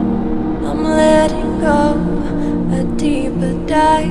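Background music: a slow song with sustained instrumental notes and long held, gliding melody notes.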